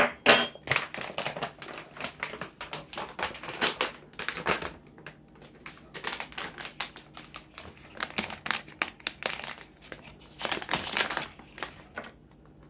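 Plastic snack-style pouch of chia seeds crinkling and rustling as it is handled and opened by hand, a fast irregular run of sharp crackles.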